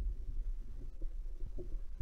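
A low, steady background rumble with a few faint soft ticks, and no other distinct sound.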